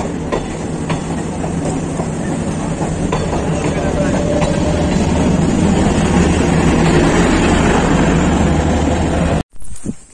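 Passenger train coaches rolling past along a station platform: a steady rumble that grows louder, with clicks of the wheels over rail joints. It cuts off abruptly near the end.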